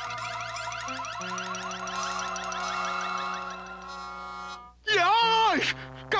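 Cartoon sound effect of a machine running after being switched on: a rapid, repeating, warbling electronic trill over a held musical chord, cutting off sharply after about five seconds. A loud voice-like call that slides up and down follows near the end.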